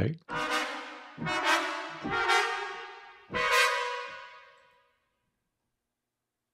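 Sampled trumpet ensemble from Orchestral Tools' Metropolis Ark 3 playing its upbeat single tight-cluster articulation: four close-voiced brass cluster chords about a second apart, each fading after it sounds, the last ringing out until about five seconds in.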